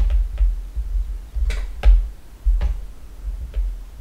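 Stylus tapping and scratching on a writing tablet as words are handwritten: irregular sharp ticks with dull low knocks, and a short scratch about one and a half seconds in.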